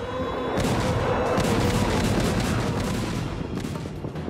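Massed artillery and Katyusha rocket-launcher barrage: a dense, continuous rumble of rapid firing and booms that swells about half a second in and eases slightly near the end.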